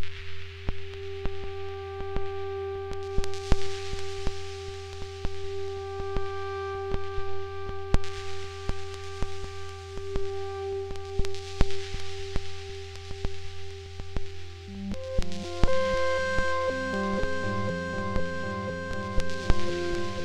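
Ambient electronic music played live on synthesizer apps on an iPad and iPod touch: a held low drone and a steady higher tone with scattered sharp clicks. About fifteen seconds in, a fast sequenced pattern of synth notes comes in.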